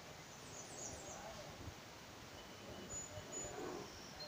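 Faint outdoor background noise with a few brief, high bird chirps about half a second to a second in, and thin high calls again near three seconds.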